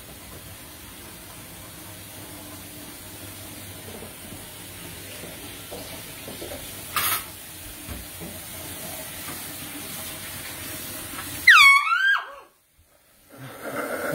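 A handheld canned air horn blasts once near the end: a loud, wavering tone lasting under a second, after which the sound cuts out abruptly. Before it there is only a faint steady hiss, with one short sharp noise about halfway through.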